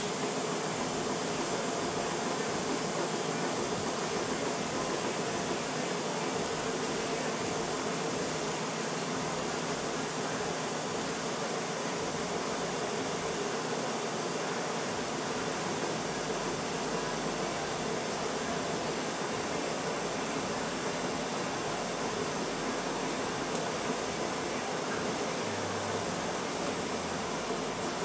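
TIG welding stainless steel: a steady, even hiss with no crackle or buzz while the arc burns and filler rod is fed into the pool.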